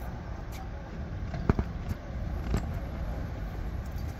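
Outdoor background noise with a steady low rumble, broken by a sharp knock about one and a half seconds in and a softer one about a second later.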